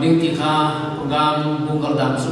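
A man's voice speaking into a microphone in slow, drawn-out syllables with a chant-like lilt, each held on a steady pitch for about half a second.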